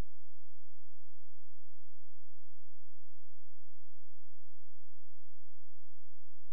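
A steady, loud, low-pitched electronic hum, one constant tone with a faint thin high whine above it.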